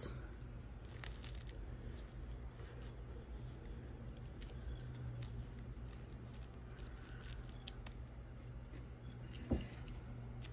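Faint, scratchy rustling and small clicks of a wipe being rubbed and pressed over glitter cardstock on a tabletop, over a steady low hum. A single soft knock comes near the end.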